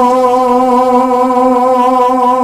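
One long note held steady at a single pitch, part of a sung naat recitation.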